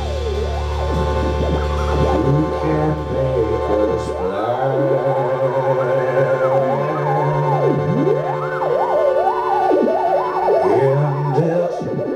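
Live band music in an experimental passage: sustained steady tones under wavering, siren-like electronic pitch glides that swoop up and down. A low bass drone drops out about four seconds in.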